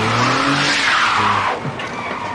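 Car tyres squealing in a skid as a sedan fishtails on the pavement, loudest in the first second and a half and then fading.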